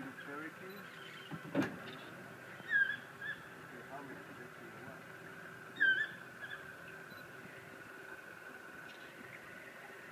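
Toucans calling from a tree: a few short, yelping calls, two louder ones about three and six seconds in, over a steady low hum. A single sharp knock about a second and a half in.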